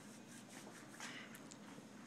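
Near silence: faint room tone with a few soft clicks and rustles, the most noticeable about a second in.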